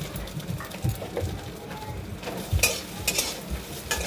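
A steel ladle stirring and scraping in a cooking pan over the sizzle of food frying, with a sharp metal clatter a little past halfway.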